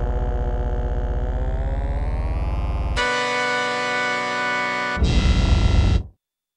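Electronic synthesizer music: a buzzy, pulsing low tone that slowly glides upward in pitch, then switches abruptly at about three seconds to a steady held high chord, then to a louder bass-heavy passage near the end that cuts off sharply.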